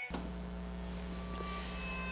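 Steady electrical mains hum with faint hiss, a low even buzz with no rhythm or change.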